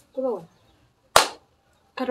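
A single loud, sharp smack about a second in, dying away quickly, preceded by a short vocal sound with a falling pitch.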